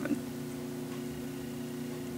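Room tone: a steady low hum with faint hiss and no distinct event.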